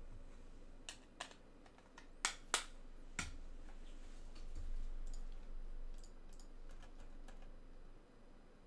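Computer keyboard keys being struck in a few short, separate clicks rather than steady typing. The loudest pair comes at about two and a half seconds, and fainter taps follow in the second half.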